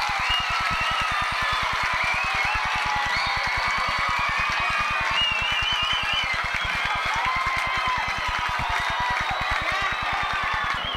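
A band playing at a high school football game, with crowd noise mixed in. A fast, even low pulsing runs underneath.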